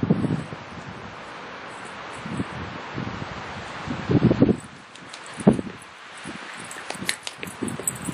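Wind blowing over the microphone, with a few low gusts buffeting it. Near the end comes a run of light quick taps, steps on a paved path.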